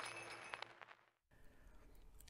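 Near silence: a faint hiss fades out over the first half second, then there is a brief gap of complete silence.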